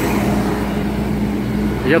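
City bus driving off close by, its engine running with a steady low drone.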